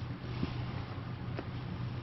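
Hands digging through and fluffing moist worm-bin castings and bedding: a soft rustle with a faint tick or two, over a steady low background hum.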